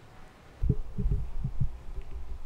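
Brief quiet, then about five low, dull thumps in quick, slightly uneven succession starting about half a second in.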